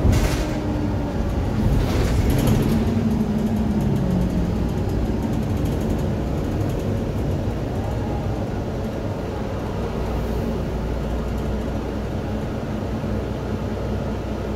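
Interior of a Mercedes-Benz Citaro single-deck bus on the move: the engine note rises for a couple of seconds early on, then settles into a steady drone of engine and road noise. Two sharp knocks from the bodywork come near the start and about two seconds in.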